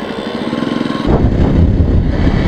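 Jawa Perak's single-cylinder engine running on the move with an even firing beat. About a second in it gets louder and fuller as the rider opens the throttle and accelerates.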